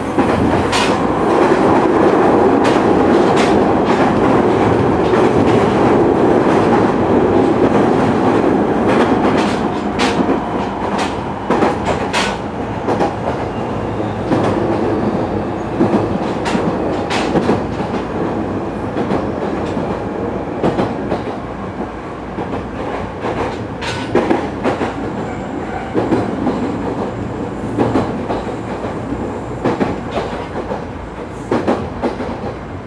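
Running noise inside a JR East 209 series electric train car at speed: a steady rumble of the wheels on the rails, louder for the first ten seconds or so, with sharp clicks as the wheels pass over rail joints.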